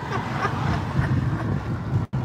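Engine and road noise heard from inside the cab of a small Daihatsu kei truck on the move: a steady low rumble.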